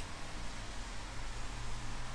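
Room tone: a steady low hiss with a faint low hum.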